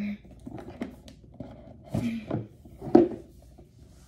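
A stiff cardboard box being forced out of its tight cardboard sleeve, with a few short thuds and scrapes, the loudest about three seconds in.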